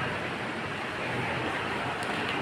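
A steady rushing noise with no distinct events.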